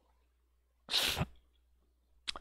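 A man sneezes once, a short sharp burst about a second in.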